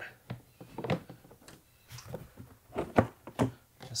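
Tesla Model Y's plastic HEPA filter cover plate knocking and tapping against the surrounding trim as it is worked loose and lifted out: a run of short knocks, the loudest about three seconds in.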